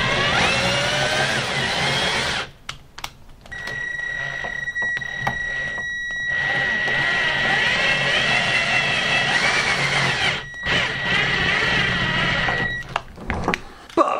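Cordless drill driver turning an offset screwdriver attachment to drive a screw into a brass door-knob rose. The motor whine shifts in pitch as the load changes, in several runs with brief pauses between them.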